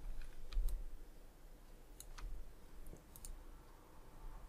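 A few faint computer mouse clicks, coming roughly in pairs, over a low background hum.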